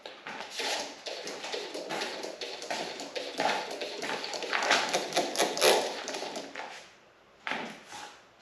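A busy run of light taps and scrapes, starting with a wooden stir stick working in a plastic cup of mixed epoxy, then handling noise, quietening about seven seconds in before one short louder burst.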